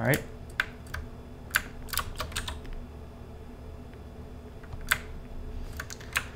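Computer keyboard keys being pressed: scattered short clicks, a quick run of them in the first half and two more near the end.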